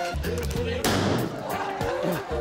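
A single revolver shot about a second in: one sharp crack with a short ringing tail, heard over music.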